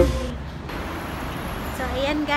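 Background guitar music cuts off at the start, leaving a steady low rumble of outdoor city background noise, like distant traffic. A woman's voice starts near the end.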